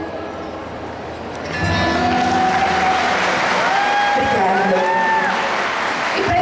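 Audience applauding at the end of a song, the clapping starting about one and a half seconds in, with a voice calling out over it.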